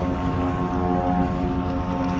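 Steady engine drone holding one low pitch.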